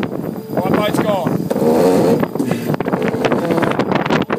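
Indistinct voices of a sailing yacht's crew over a steady rush of wind and water as the boat sails fast through choppy sea.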